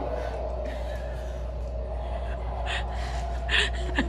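Sharp, audible gasping breaths over a steady low hum, with two louder breaths near the end.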